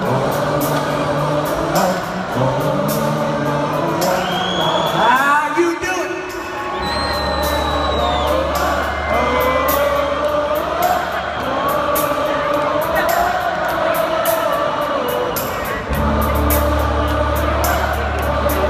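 Live country rock concert music heard from within the audience: the band plays a steady beat while a large crowd sings along, with whoops and cheers. The low end drops out briefly about six seconds in, then a deep bass comes back in.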